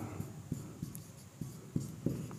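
Marker writing on a whiteboard: faint, irregular ticks and scratches as the strokes of the letters are drawn.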